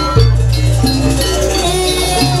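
Loud jaranan accompaniment music from a gamelan-style ensemble: long low gong tones under metallic, bell-like percussion.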